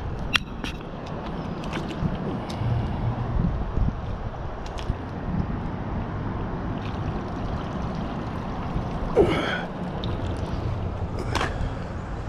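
Magnet-fishing rope and a recovered metal find being hauled up and handled on concrete: scattered knocks and clicks over a steady low rumble, with a short gasping breath about nine seconds in.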